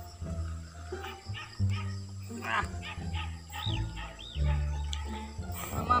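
Background music with sustained low notes that change about every second and short rising-and-falling high notes over them.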